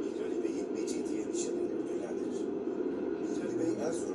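Turkish narration of a museum presentation playing over loudspeakers, muffled and hard to make out.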